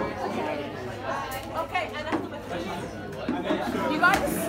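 Indistinct chatter: several voices talking over one another.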